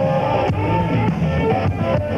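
Instrumental break of a live rock song: electric guitars playing over a drum beat.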